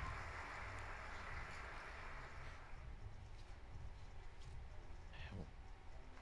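Faint ambience of a quiet hall: a low steady hum under a soft hiss that fades away over the first couple of seconds, with one brief faint voice-like sound near the end.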